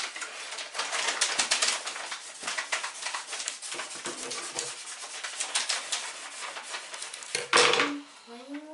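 Dense crackling rustle and many small clicks from hands handling a crochet hat and beads on a tabletop, with a louder burst near the end.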